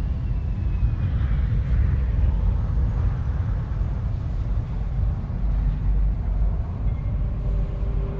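Deep, steady engine-like rumble of a sci-fi spaceship ambience soundscape, with a few faint clicks and thin tones over it.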